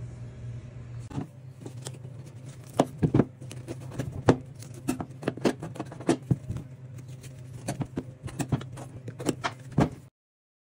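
Knife cutting a bone-in dry-aged ribeye on a cutting board: irregular sharp clicks and knocks as the blade and bones hit the board, starting about a second in, over a steady low hum.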